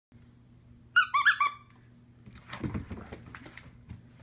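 A squeaky panda dog toy squeaked three times in quick succession, followed by a puppy's claws pattering on a hardwood floor as it runs off.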